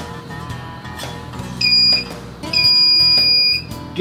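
Cen-Tech hand-held pinpointer metal detector sounding its high-pitched alert tone as a metal pin is brought within about half an inch of its tip: one short tone about one and a half seconds in, then a longer steady tone of about a second.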